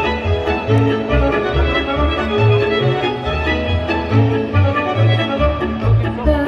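Instrumental passage of Romanian folk music: a fiddle carries the melody over a steady, bouncing bass beat.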